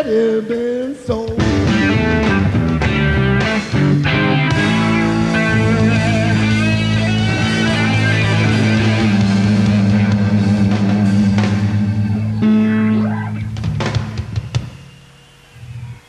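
Live rock band with bass, electric guitars, keyboards and drums ending a song. A busy run of changing notes gives way, about four seconds in, to a long held final chord over a deep bass note, and a few drum and cymbal strikes mark the close. The chord then dies away, fading out a couple of seconds before the end.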